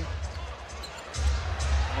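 Basketball being dribbled on a hardwood arena court, with low arena music coming back in about halfway through.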